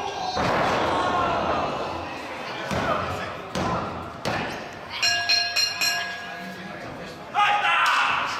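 A wrestler slammed onto the padded ring mat with a heavy thud about half a second in, followed by the referee slapping the mat three times for the pin count, a little under a second apart.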